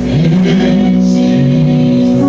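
Live gospel music: a man sings into a microphone over steady held backing chords, his voice starting a moment in and bending through the phrase.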